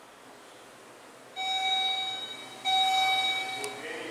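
Elevator hall lantern arrival chime sounding twice: two steady electronic tones of the same pitch, about a second each with a short gap between. Two chimes with a lit down arrow announce a car arriving to travel down.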